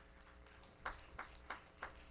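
Footsteps, about three steps a second, starting about a second in, over a faint steady hum.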